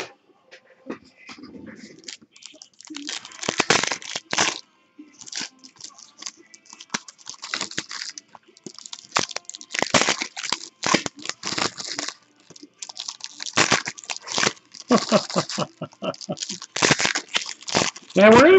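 Foil trading-card pack wrappers being torn open and crinkled by hand: a run of quick, irregular rips and rustles, getting busier after the first couple of seconds.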